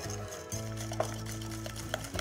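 Balloon whisk beating an egg and sugar mixture in a glass bowl, its wires ticking quickly against the glass, over steady background music.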